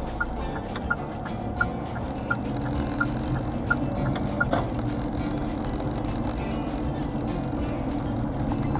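Inside a moving car: steady engine and road rumble with the turn-signal indicator ticking about three times every two seconds, stopping about four and a half seconds in. Background music plays over it.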